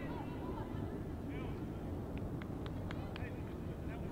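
Open-air field ambience at a women's soccer match during a free-kick stoppage: faint distant voices calling out on the pitch over a steady low rumble. A few sharp claps or clicks come in quick succession past the middle.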